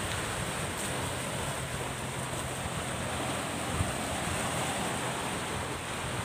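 Steady wash of sea surf, an even noise that holds at one level without breaks.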